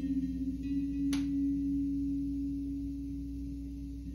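A single sustained low tone, wavering slightly, played through a floor-standing loudspeaker. A sharp click comes about a second in.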